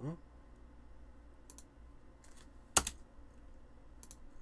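Computer mouse clicks: a couple of faint clicks, then a louder quick double click a little under three seconds in, over a steady low hum.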